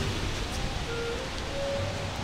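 Steady outdoor background noise in a pause between speech, with a few faint, short held tones about halfway through.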